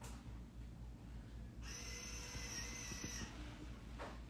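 Faint room tone with a low steady hum. About a second and a half in, a person breathes out audibly close to the microphone for a second and a half, a hissy breath with a faint whistle in it.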